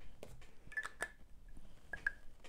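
A glass perfume bottle being handled: a few faint, short clicks and light taps, some with a brief glassy ring, about a second in and again near the end.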